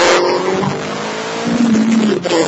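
Ford Focus SVT's 2.0-litre four-cylinder engine pulling hard, its pitch rising slowly, heard from inside the car. A loud rush of noise cuts off just after the start.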